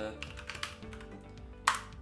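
Computer keyboard typing and clicks, with a sharper, louder click near the end, over steady background music.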